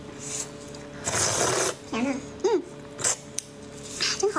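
Wet handling and eating noises from a red shrimp being pulled apart with gloved hands: a noisy wet burst about a second in, two short hummed "mm" sounds, and a couple of sharp clicks near the end.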